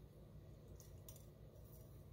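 Near silence: room tone, with a couple of faint light ticks about a second in.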